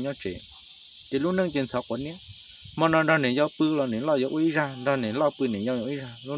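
A man talking in a low voice, with pauses, over a steady high-pitched chorus of insects.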